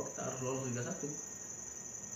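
A steady high-pitched insect trill runs unbroken under a man's voice trailing off in the first second.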